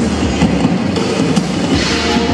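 Two drummers playing drum kits together live: a fast, dense run of drum hits.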